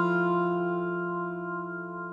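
Music: a guitar chord struck just before, ringing out and slowly fading, like the closing chord of a ballad.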